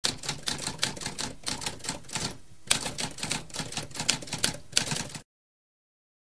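Typewriter keys clacking in a rapid run, with a short break about halfway through; the typing stops abruptly about five seconds in.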